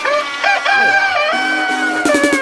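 A rooster crowing sample in a soca track, heard over a held synth tone while the drums and bass drop out.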